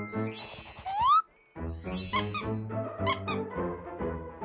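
Light, playful background music with cartoon-style sound effects: a short rising squeaky glide about a second in, a brief break, then the music picks up again with a short twinkle near the end.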